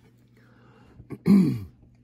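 A man clearing his throat once, a little over a second in: a short, loud, voiced rasp that falls in pitch.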